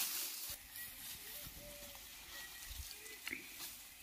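Faint crackling rustle of dry straw being handled and carried.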